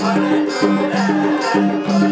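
Nepali dohori folk music: a harmonium plays a stepping melody of held reed notes over steady, evenly beaten percussion.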